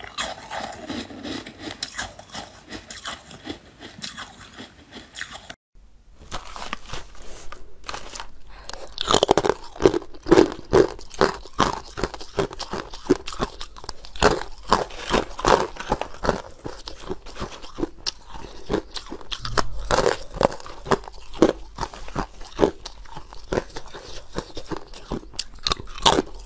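Close-miked crunching of ice being bitten and chewed in the mouth, many sharp crunches in quick succession. The sound cuts out briefly about six seconds in, and the crunching is louder and denser from about nine seconds in.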